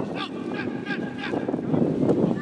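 Soccer players shouting to one another across the pitch: several short, distant calls over the general noise of the field.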